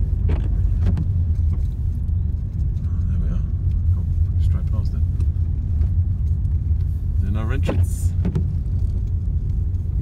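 Car driving slowly along a narrow lane, heard from inside the cabin: a steady low rumble of engine and tyres, with a few light clicks and rattles.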